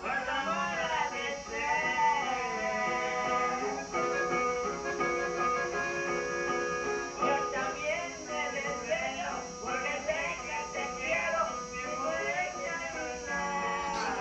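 Norteño music: a button accordion playing a lively lead melody of quick runs and held notes over acoustic guitar accompaniment, played back from a television.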